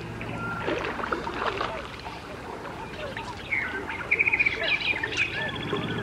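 Birds chirping and calling, many short rising and falling notes, with a rapid trill about four seconds in, over a steady low hum.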